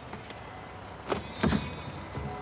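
Two dull knocks on a green plastic wheelie bin, about a third of a second apart, the second louder and deeper.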